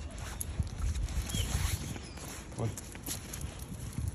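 Footsteps of a person walking a small dog along a wet street, with irregular light clicks over a low rumble.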